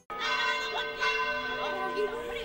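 Church bells ringing, their tones overlapping and dying away slowly, with a fresh strike about a second in.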